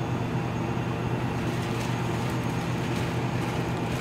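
2x2-foot laminar flow hood's fan running: a steady low hum with a rush of air.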